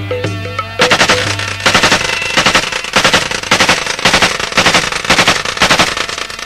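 Instrumental break in a Punjabi-Saraiki folk song: a melody over deep hand-drum beats at first, then from about a second in a fast, loud run of drum strokes.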